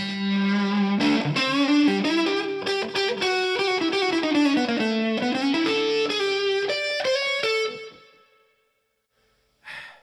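Electric guitar played through an Origin Effects RevivalTREM pedal in overdrive mode, tremolo off, gain turned up. It plays a lead run with string bends, sounding like an old Fender amp cranked up. The last note rings and fades out about eight seconds in.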